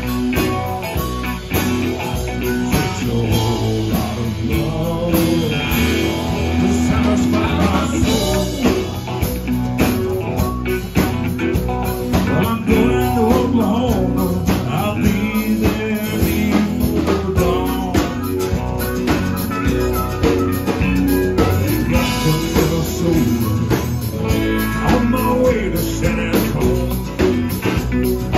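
Live band playing a bluesy song: a Telecaster electric guitar, a second electric guitar, and acoustic guitar over a steady low end, with a man singing at times.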